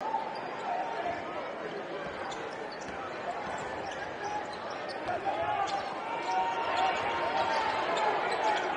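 Arena crowd chatter from a packed college basketball game, with a basketball being dribbled on the hardwood court. The crowd noise builds slightly toward the end.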